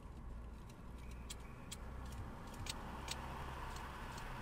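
Car interior sound as the car accelerates: a low engine hum with tyre and road noise that grows louder toward the end. A few sharp clicks come through, some in pairs.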